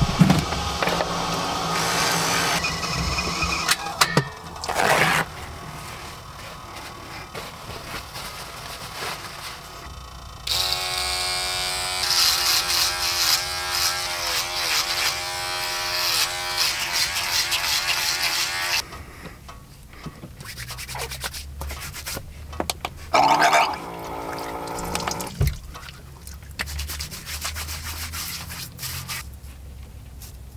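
Small handheld electric hair trimmer buzzing for about eight seconds in the middle, its pitch wavering slightly as it cuts, then switched on again briefly later.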